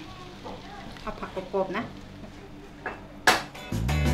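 A hot wok sizzles faintly as a stir-fry is scraped out onto a plate with a metal spatula, with soft voices in the background. Near the end there is a sharp loud hit and music comes in.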